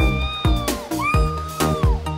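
Upbeat background music with a steady drum beat and a high lead melody whose notes slide up and down.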